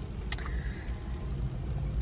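Low steady rumble in a car's cabin, with a brief faint click about a third of a second in.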